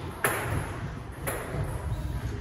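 Table tennis ball clicking sharply twice, about a second apart, the first click the louder.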